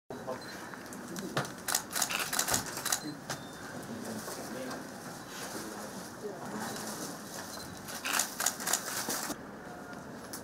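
Low murmur of voices in a room, broken by two bursts of rapid camera shutter clicks, one starting about a second in and another near the end.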